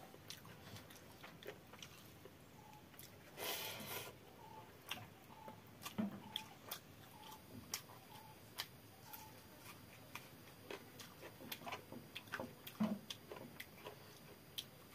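Close-up sounds of a person eating watery fermented rice (panta bhat) by hand: quiet chewing with many small mouth clicks and smacks. A brief louder noisy stretch comes about three and a half seconds in.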